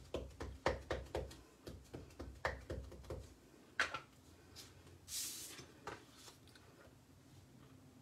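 A black ink pad tapped repeatedly onto a clear photopolymer stamp to ink it: light, quick taps, about four a second, for about three seconds. Then a click and, about five seconds in, a short rustle of paper being moved.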